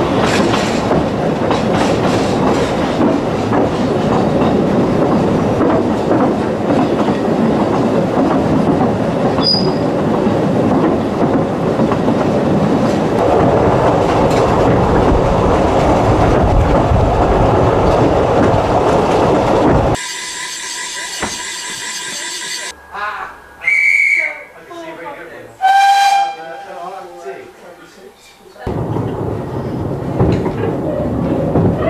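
Narrow-gauge steam train running, heard from the carriage: a loud steady rumble with clickety-clack of the wheels over the rail joints. About two-thirds through the rumble cuts off suddenly and a much quieter stretch follows with a few short whistle-like notes, before the running noise comes back near the end.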